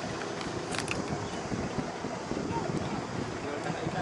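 Steady outdoor noise on an open tour boat: wind and a running boat engine, with faint voices in the background and a short click just under a second in.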